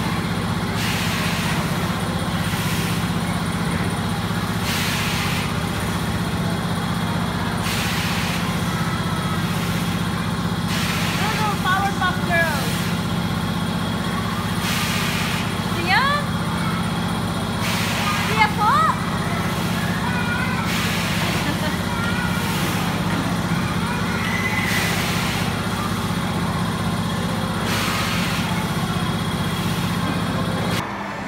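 Indoor amusement ride machinery running with a steady low hum and a hiss that comes back every two to three seconds. A young child's high voice calls out a few times in the middle.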